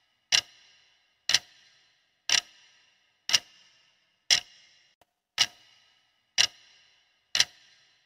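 Countdown-timer sound effect of a clock ticking, one sharp tick about once a second, each with a short ringing tail.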